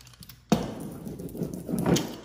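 Small hand seam roller pressed and rolled along the edge of a natural hyacinth-veneer wallcovering, a scraping rustle that starts suddenly about half a second in and swells near the end. It is working down an edge that won't lie flat against the wall.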